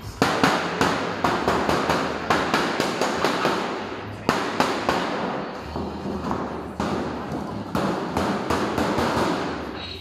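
Sharp metallic cracks and bangs, a few a second at uneven spacing, over a rough scraping, rustling noise: a large embossed aluminium sheet-metal elbow cladding being handled and worked along its seam.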